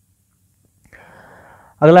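Near silence, then a faint breathy hiss lasting under a second, like a speaker drawing breath, just before a man's voice says one word near the end.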